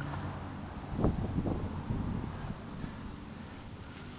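Outdoor background with a low wind rumble on the microphone and a brief thump about a second in.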